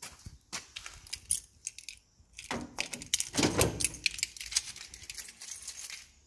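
Light metallic clicks and jingling from handling a steel tool workstation, with a denser rattling clatter and a low thud about halfway through.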